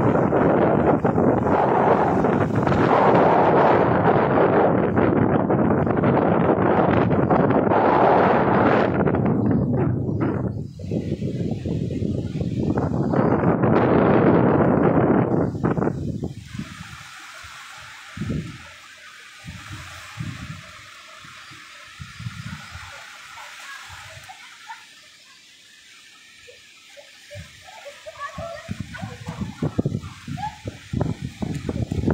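Rough sea with waves washing onto the shore and wind buffeting the microphone, loud for about the first sixteen seconds. After that it falls much quieter, with scattered low thumps.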